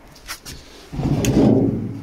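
Sheet-metal hive roof being handled and set onto a wooden beehive. There are a few faint clicks, then from about a second in a louder scraping, sliding sound with a couple of knocks.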